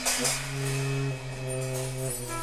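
Free-jazz trio of clarinet, tenor saxophone and drums: long, held, overlapping horn notes, with a high cymbal-like haze that thins after the first second.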